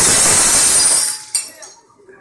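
A loud, noisy crash that lasts about a second, then a single sharp knock, after which the sound dies away.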